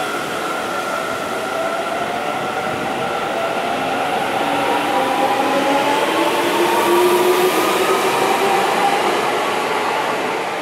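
Seibu Railway electric commuter train moving along the station platform, its traction motors giving a whine that slowly rises in pitch as the train picks up speed, over the rumble of wheels on the rails. It is loudest about seven seconds in.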